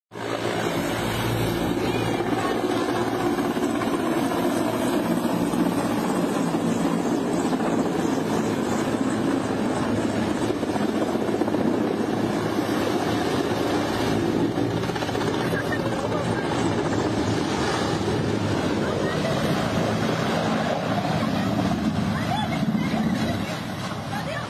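Mi-17-type military transport helicopter flying low and coming in to land, its rotor and turbines making a loud, steady noise.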